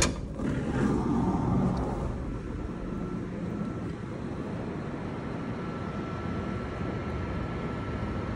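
A sharp click, then a steady low rumble with a faint thin whine, like a vehicle moving.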